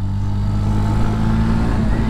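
Yamaha FZS V3's air-cooled single-cylinder engine running at a steady pace under way, heard from on the bike.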